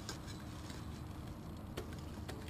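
Faint scrubbing of a stiff bristle brush working grime out of a mountain bike's chainrings, with a few light ticks.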